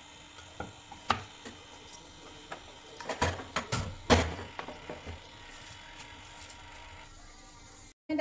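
Metal pressure cooker handled on a gas stove: a few light knocks, then a cluster of clattering metal knocks and thumps in the middle, the loudest about four seconds in, as the cooker is lifted and set back on the burner.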